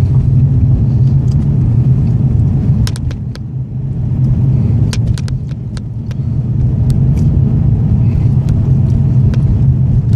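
Car engine and road noise heard from inside the cabin while driving: a steady low rumble that eases off for a few seconds in the middle, with scattered short sharp ticks.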